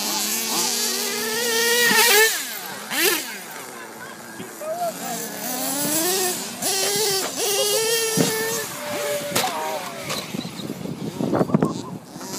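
Radio-controlled model car's motor revving up and down again and again as the car drives and jumps off a ramp, its pitch rising and falling. A burst of rough knocks and rattles comes near the end.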